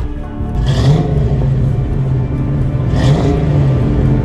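Fox-body Ford Mustang GT's 5.0 V8 running under load as the car pulls away, its engine note swelling about a second in and again near the end, heard over background music.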